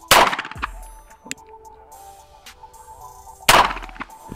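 Two 9mm pistol shots from an Archon Type B, one right at the start and one near the end, about three and a half seconds apart, each with a short ringing tail.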